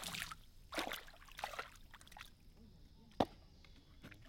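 Water splashing as a crocodile lunges and thrashes at the surface, a run of separate splashes over the first two seconds or so, then a single sharp knock a little past three seconds in.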